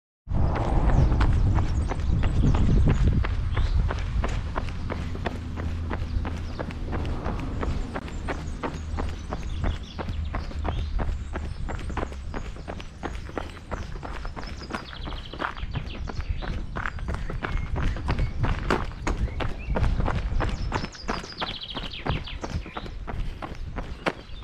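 A runner's footsteps at a steady jogging pace, striking cobblestones and then gravel, with a heavy low rumble over the first few seconds.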